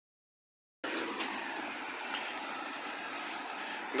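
City bus driving away down the street, a steady rush of engine and road noise that starts about a second in and fades a little as the bus moves off.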